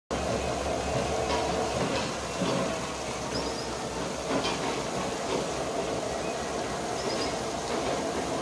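Canadian Pacific EMD GP20C diesel locomotive running steadily as it backs slowly along a siding, a low engine hum under the noise, with a few sharp clicks in the first half.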